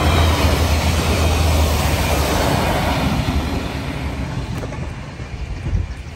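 A regional passenger train running past close by: a loud rush of wheels on rail with a low running hum, loudest in the first few seconds, then fading as it moves away.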